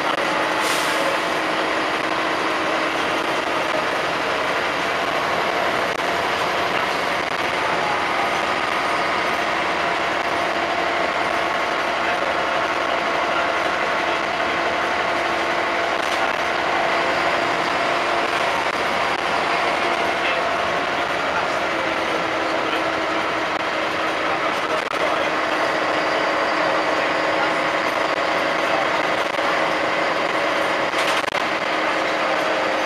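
Interior of a single-deck bus under way, heard from a passenger seat: a steady drone of engine and running gear with several whining tones that slide in pitch now and then, and rattling of the body and fittings. A sharp click comes just after the start and another about halfway through.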